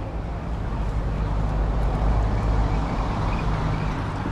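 A small shuttle bus's engine running as it drives past, a low hum that swells toward the middle and eases off near the end.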